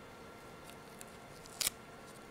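Faint handling of masking tape and a paper wing being pressed onto a cork, with a few light clicks and one short, sharper crinkle about one and a half seconds in.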